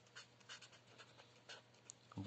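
Marker pen writing a word on paper: a run of short, faint strokes of the tip on the sheet.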